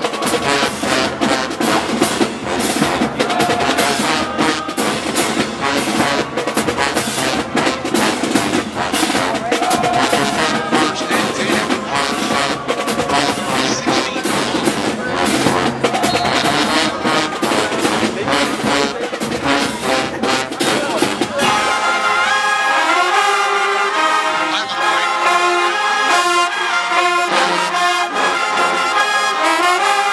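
College marching band playing in the stands: brass with sousaphones over a heavy drum beat. About two-thirds of the way through, the drums and low bass drop away and the horns carry on with clearer, held melody lines.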